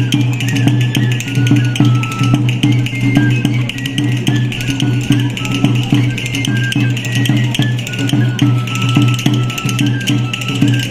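Traditional folk dance music: a high single-line melody moving in steps over a steady, regular drum beat.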